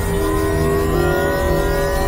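Experimental electronic synthesizer drone music: several held synth tones layered over a dense low rumble, with thin higher tones slowly gliding upward in pitch.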